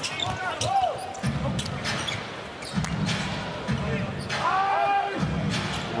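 A basketball being dribbled on a hardwood arena court: scattered sharp bounces over steady crowd noise, with a few short pitched squeaks about two-thirds of the way through.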